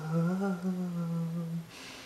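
A man's voice humming a wordless, unaccompanied held note that wavers a little in pitch and breaks off near the end, followed by a short breath.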